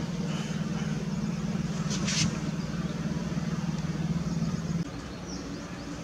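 A motor or engine running with a steady low hum that cuts off about five seconds in, leaving a fainter, slightly higher hum.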